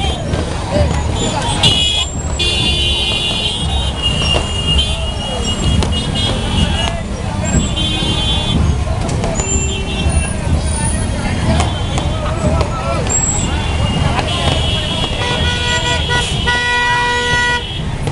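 Motorcycle and car horns tooting again and again in a street packed with slow-moving motorcycles and cars, over engine rumble and crowd voices. Near the end a lower, deeper horn sounds for a couple of seconds alongside the higher ones.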